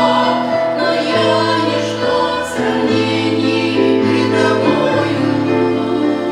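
A small group of women singing a Russian-language Christian hymn in harmony into microphones, holding long notes that change chord every second or so.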